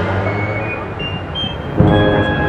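Procession brass band playing a slow funeral march. A chord dies away and a few held brass notes linger, then a drum stroke and a new full chord come in near the end.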